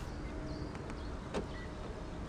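A single short click from the 2012 Hyundai Avante's front door handle and lock, about halfway through, as the smart-key lock button on the handle is pressed, over a faint steady background.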